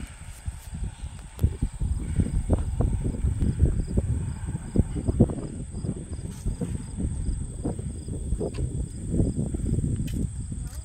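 Wind buffeting the microphone in irregular gusts, a low rumble that rises and falls throughout. A faint, rapid insect chirping runs underneath in the middle of the stretch.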